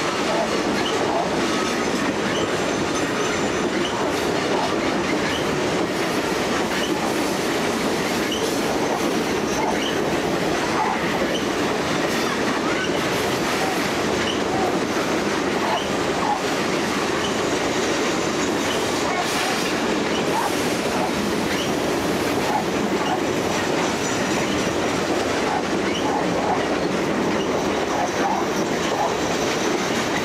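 Freight train's covered hopper cars rolling steadily past: a continuous rumble of steel wheels on rail with clickety-clack over the rail joints. Brief high squeaks are scattered throughout.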